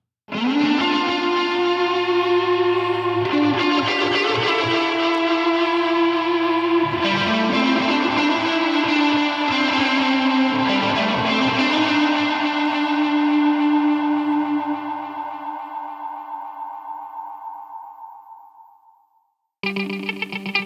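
Electric guitar played through Colortone spring reverb and lo-fi delay pedals: sustained, slightly distorted notes with echoes trailing behind them. The passage fades away over its last few seconds and stops, and another guitar passage starts right at the end.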